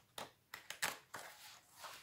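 Paper pages of a coloring book being turned by hand: a quick series of short, crisp rustles and flaps, about half a dozen in the first second and a half.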